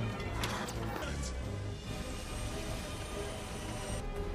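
Action film score with sustained chords and a low pulse. Whooshing sound effects sweep through about half a second and a second in.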